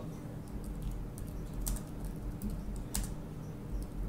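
Computer keyboard keys clicking in an irregular run as a terminal command is typed, with two louder keystrokes about one and a half and three seconds in, over a low steady hum.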